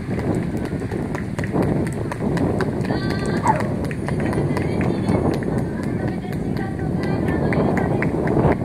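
Strong wind buffeting the microphone as a steady low rumble, with voices faintly heard through it, one stretch about three seconds in.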